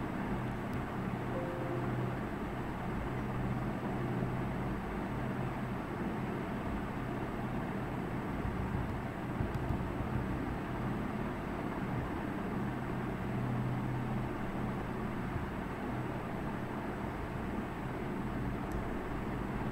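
Steady low hum and background noise with no speech, and a couple of faint clicks.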